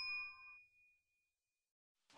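Tail of a bright 'ding' notification-bell sound effect from a subscribe-button animation, ringing out and fading away within about half a second, leaving near silence.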